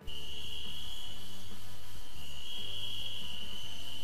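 Crickets trilling steadily as a night-ambience sound effect, a continuous high chirring over faint background music; it starts and cuts off abruptly.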